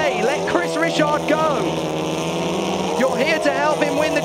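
Touring car engines running steadily at high revs on the race broadcast, under a commentator's voice that pauses for about a second in the middle.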